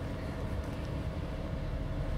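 A steady low rumble with a faint, steady hum held over it, unchanging throughout.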